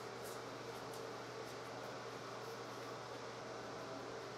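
Steady low hiss with a constant low hum in a small tiled room: room ventilation noise, with only faint soft rubbing at most.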